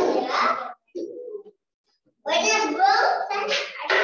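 A young child's voice coming through a video call, vocalising in short unclear phrases, with a second of dead silence between them.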